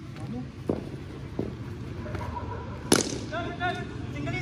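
A single sharp crack about three seconds in, a cricket bat striking a taped tennis ball, with two fainter knocks before it and shouting voices right after.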